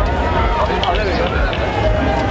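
A live rock band's amplified sound from within the crowd, recorded loud with a heavy, distorted low end, with voices mixed in.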